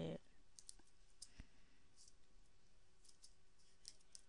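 Faint, irregular clicks from a computer's keys and mouse, a few a second.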